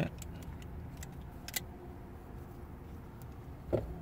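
Light clicks and knocks from a Mazda Miata soft-top latch being unlatched and handled at the windshield header. There are several short clicks in the first second and a half, a sharper one about a second and a half in, and a last click near the end.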